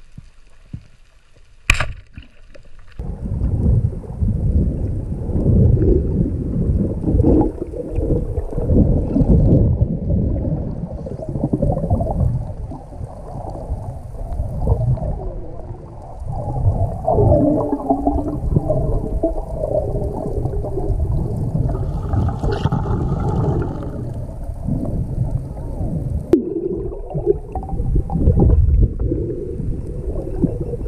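Underwater speargun shot: one sharp click just under two seconds in, then loud rushing and gurgling water and bubbles as the speared coral trout is fought and brought up on the line.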